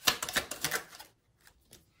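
A deck of tarot cards being shuffled: a rapid run of crisp clicks and flicks for about a second, then a couple of single clicks near the end.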